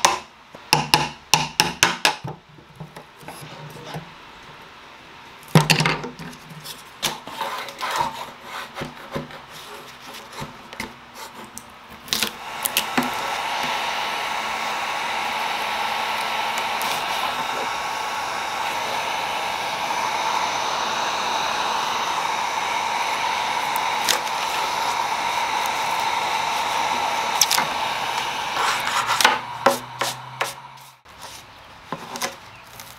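A steel chisel clicking and scraping against wood as trim and veneer are pried off. About twelve seconds in, an electric heat gun switches on and runs steadily while a scraper lifts the softened veneer.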